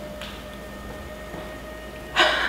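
Electric motor of a power recliner humming steadily as the chair reclines, one unchanging whine with fainter higher overtones.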